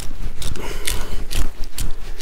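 Hand salt grinder twisted back and forth, crunching coarse salt crystals in short grinding strokes about twice a second.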